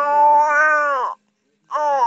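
A three-month-old baby cooing: one long, high, held vocal sound that stops about a second in, then after a short pause another coo with a wavering pitch begins near the end.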